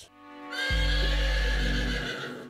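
A horse whinnying in one long call starting about half a second in, over music with a deep steady bass that comes in just after.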